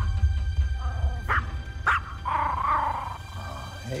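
Ominous film score with a heavy low rumble that fades out during the first two seconds. Short sharp sounds cut in over it near the start and again at about one and a half and two seconds.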